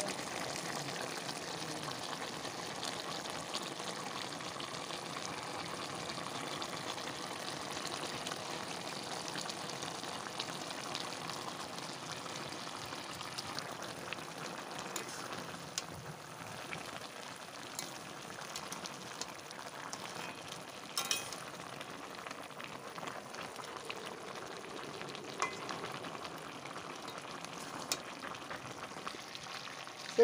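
Chicken curry with potatoes sizzling steadily as it fries in a metal kadai, a continuous crackle, with a few sharp clicks in the second half.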